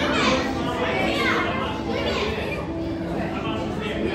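Children's voices and chatter from people nearby, with high-pitched calls and exclamations, over a steady low hum.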